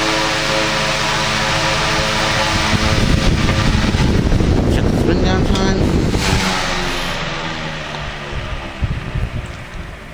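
A 1940s A.C. Gilbert Polar Cub 12-inch oscillating fan running with a steady electrical buzz, which comes from frayed wiring and worn solder connections. In the last few seconds the sound fades away as the heavy blades spin down.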